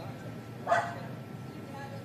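A dog barks once, a short bark about two-thirds of a second in, over faint voices of people talking.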